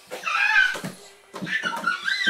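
Young children squealing and shrieking in rough play, several short high-pitched cries, with a couple of low bumps as they grapple.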